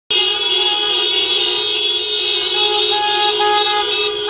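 Several car horns of different pitches blaring together without a break, a vehicle caravan honking in protest. About halfway through, one horn adds repeated short toots over the held blare.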